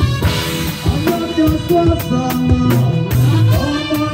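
A live reggae band playing an instrumental passage: drum kit, bass, electric guitar and keyboard, with steady drum hits under sustained keyboard and guitar notes.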